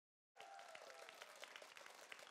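Very faint applause, many scattered claps, fading in after about a third of a second of dead silence.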